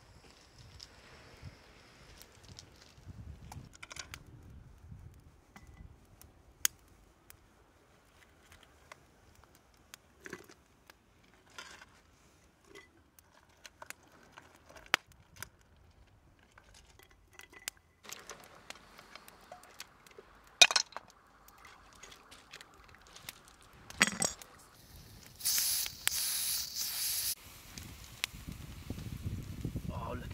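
Small wood fire under a cast iron cooking pot, crackling with scattered sharp pops and a few louder snaps. Near the end a loud hiss lasts about two seconds.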